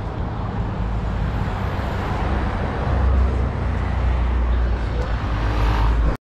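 Steady road traffic noise from cars on a city road, with a heavy low rumble that swells about halfway through and again near the end.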